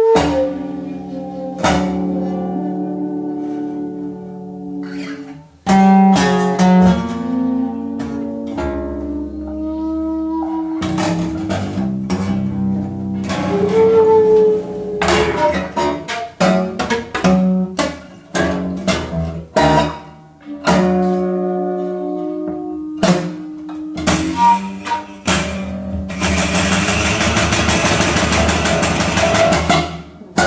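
Free-improvised duet of acoustic guitar and shakuhachi: plucked guitar notes against long, sliding held tones. Near the end it turns into a dense, rapid flurry of strokes.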